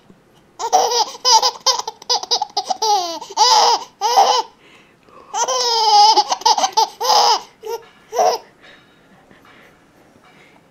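Young baby laughing: a run of short, high-pitched giggles, then a longer held laugh about halfway through and a few last giggles that die away near the end.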